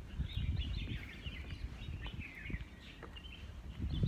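Small birds chirping in the trees, short high calls scattered throughout, over a low rumble of wind on the microphone.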